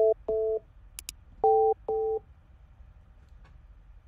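Keypad tones from Skype's dial pad sending digits to an automated phone menu: four short two-note beeps in the first two seconds, each about a quarter second long, with a sharp click about a second in.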